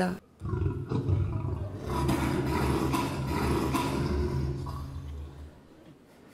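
A lion's roar, low and rough, starting about half a second in and fading away over about five seconds.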